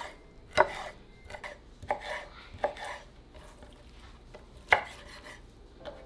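Chef's knife slicing roasted poblano chiles into strips on a wooden cutting board: a few irregular knocks of the blade against the board, the sharpest about five seconds in.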